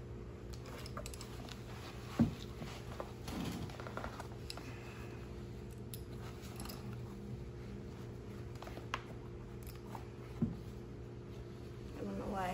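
Catcher's shin-guard straps and buckles being handled and fastened: soft strap handling with a couple of sharp clicks, the loudest about two seconds in and another near the end, over a steady low hum.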